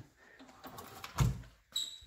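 Faint rustling and one dull, low thump just over a second in.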